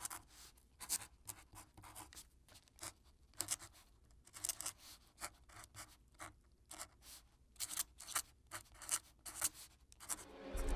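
Faint, irregular scratching strokes of a hand scrawling marks on the floor, two or three a second, with a short lull about midway.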